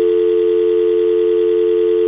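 Telephone dial tone: two low tones sounding together in a loud, steady, unbroken hum, cutting in suddenly as the call is disconnected.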